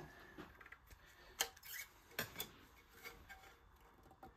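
A few faint clicks and light metallic knocks, the sharpest about a second and a half in, from the heavy platter of a Goldring Lenco GL75 idler-drive turntable being handled and brought back onto the deck.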